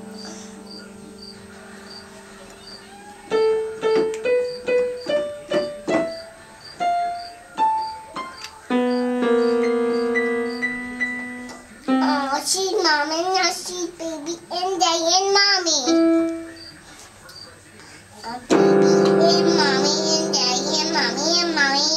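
Electronic keyboard played by a toddler: a held chord fading away, then single keys struck one after another, climbing in pitch, then another held chord. In the second half a child's voice holds long sung notes with a wavering pitch, the last one over a loud keyboard chord.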